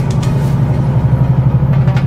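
Truck engine and road noise heard from inside the cab while driving, a steady low drone.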